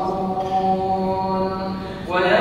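A man chanting Quranic recitation in Arabic, drawing out one long held note that slowly fades near the end.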